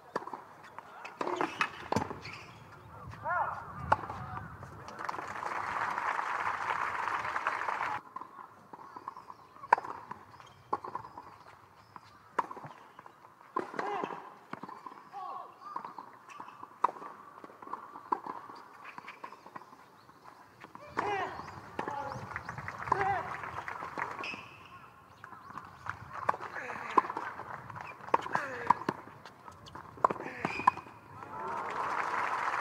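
Tennis rallies on a hard court: sharp pops of racket strings striking the ball and the ball bouncing, with murmuring crowd voices. About five seconds in, the crowd applauds for a few seconds, then the applause cuts off suddenly.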